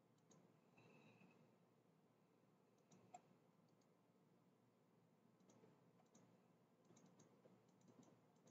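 Near silence with a few faint computer mouse clicks: one about three seconds in, then several more scattered through the last few seconds.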